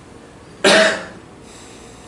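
A single loud cough, short and sudden, lasting under half a second.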